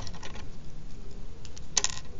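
A few short, light clicks and taps with no speech, the loudest a quick pair near the end.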